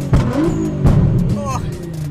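Straight-piped Nissan GT-R R35's twin-turbo V6 running under throttle, heard from inside the cabin, with a string of sharp cracks and pops from the exhaust.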